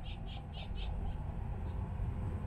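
A run of short, high chirps from a small animal, about five a second, stopping about a second in, over a low steady outdoor rumble.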